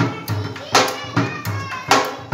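Dhol drum beaten with sticks in a loose rhythm: sharp cracking strokes over deep booms, a few strokes a second, with children's voices calling over it.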